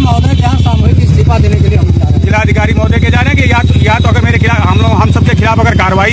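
A motor vehicle engine running close by with a low, fast, even throb, with men's voices talking over it.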